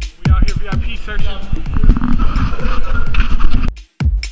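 Loud overlapping voices of a crowd shouting, with a din of music under them. The sound cuts off abruptly near the end.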